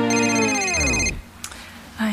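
Music sliding down in pitch and slowing to a stop, a tape-stop effect, under a pulsing, trilling phone ring. The ring cuts off suddenly a little after a second in.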